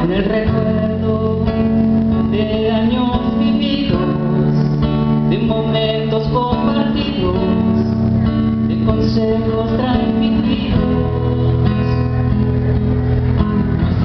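Nylon-string classical guitar strummed and picked, playing a slow song.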